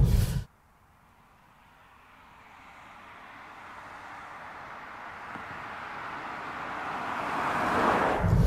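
A Citroën C6 saloon approaching along the road and passing close by. Its road noise rises steadily from near silence to a peak near the end.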